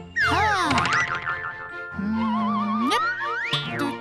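Cartoon sound effects over children's background music: several whistle-like glides falling in pitch just after the start, then a low, wavering tone that climbs steeply to a high pitch about three seconds in, and a quick rising glide after it.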